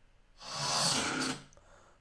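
A stock sound-design effect previewed from Canva's audio library: a swell of rushing, hiss-like noise with a faint low tone under it. It rises about half a second in and fades out after about a second.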